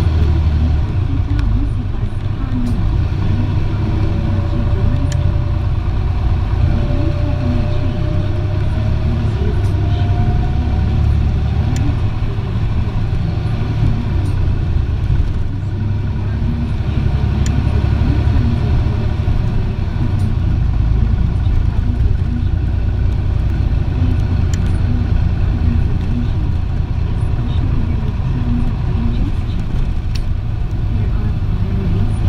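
Cabin running sound of an Isuzu Erga city bus under way: a steady low diesel drone with road noise. A thin tone rises in pitch from about four to eleven seconds in.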